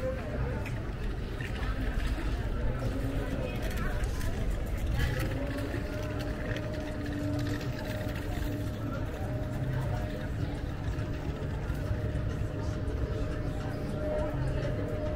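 Outdoor ambience of a busy waterfront promenade: voices of passers-by over a low rumble. A steady hum comes in about five seconds in and holds.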